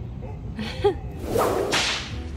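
A quick whoosh: a swell of hissing rush lasting just under a second, starting about a second in, with a brief pitched blip just before it.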